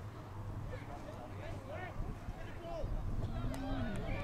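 Scattered distant shouting from spectators and players across an open football ground, over a steady low rumble.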